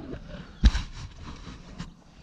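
A single sharp knock of paddle or fishing gear against the plastic hull of a sit-on kayak, about two-thirds of a second in, followed by faint rustling handling noise and a lighter click near the end.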